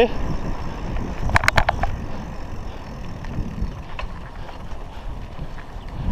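Wind buffeting a chest-mounted GoPro's microphone over the low rumble of a Raleigh MXR DS 29er bicycle's tyres rolling on tarmac. A quick run of about five sharp clicks comes about a second and a half in.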